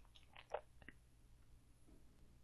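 Near silence: room tone, with a few faint clicks about half a second in.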